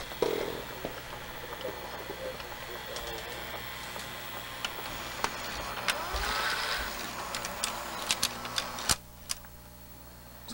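Mechanism of a Hitachi-built RCA VPT630HF VCR unloading the tape after stop is pressed: a steady motor hum with small mechanical clicks, and a whine rising in pitch about six seconds in. The mechanism goes quiet about nine seconds in.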